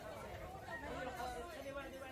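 Indistinct chatter of several people talking in the background over a low, steady hum.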